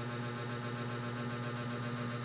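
A steady low hum with a faint hiss, unchanging in level.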